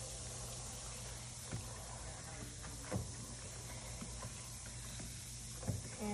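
Faint water sloshing as hands work in a shallow tray of water, with a few soft splashes.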